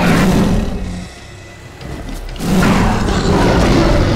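A big cat's snarling roar, film creature sound design, in two loud bursts: one at the start lasting about a second, and a longer one from about two and a half seconds in as the cat leaps.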